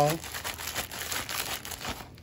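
Clear plastic packaging holding metal cutting dies crinkling as it is handled and slid aside, a run of irregular crackles.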